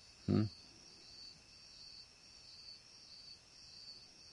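Crickets chirring steadily in the background, a continuous high-pitched trill, with a short 'hmm?' from a man's voice just after the start.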